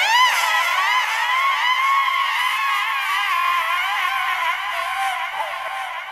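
Electronic instrumental track with several high, wavering tones layered over each other, gliding up and down in pitch, easing slightly quieter toward the end.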